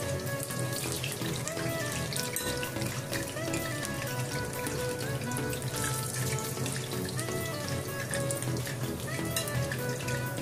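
Curd-dough donuts deep-frying in a pot of hot oil: a steady bubbling sizzle with fine crackles, under background music.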